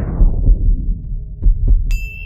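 Sci-fi sound effects for a portal opening: a low, pulsing rumble fades out over a steady hum. Two short clicks follow about a second and a half in, and a bright ringing chime comes right at the end.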